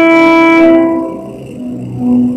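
Organ holding a loud sustained chord that cuts off about a second in, its reverberation dying away in the chapel. Softer held notes begin after it.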